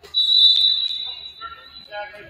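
Referee's whistle: one long, steady high blast that fades out over about a second and a half. A sharp smack comes about half a second in, and voices rise near the end.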